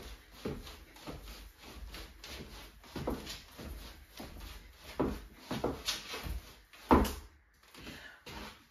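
Shoes stepping and tapping on a wooden floor in the quick, even footwork of the Charleston step, about two steps a second. The hardest step lands about seven seconds in, and the steps stop shortly before the end.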